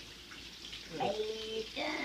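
Faint, steady hiss of bacon frying in a skillet.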